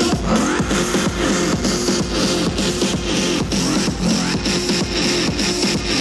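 Electronic dance music played loud by DJs over a hall PA system, with a steady driving beat.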